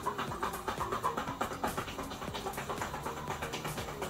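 Background music with a person panting hard from exertion during a boxing workout.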